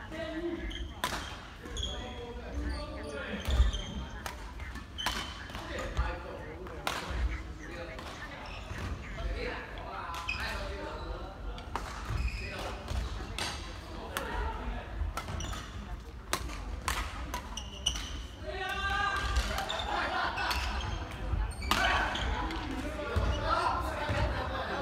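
Badminton rackets striking shuttlecocks in rallies, heard as many sharp clicks, together with footsteps and shoes on the wooden court floor, echoing in a large sports hall. Players' voices talk across it, more so in the last few seconds.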